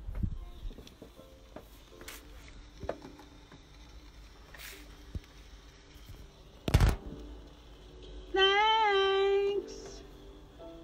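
Faint knocks and a sharp thump about seven seconds in, then music from a vinyl record: one held note, rising a little and then steady, for about a second near the end.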